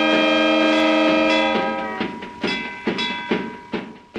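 Train whistle sounding a held chord of several tones for about two seconds, then fading, with evenly spaced clicks about twice a second like wheels over rail joints.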